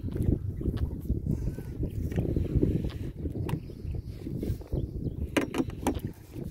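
Irregular low rumbling noise of wind buffeting the microphone and water against the boat, with a few sharp clicks, most of them near the end.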